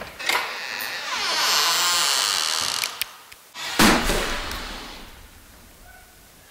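Old wooden door creaking open on its hinges in one long, wavering creak, then a heavy thud about four seconds in that dies away slowly.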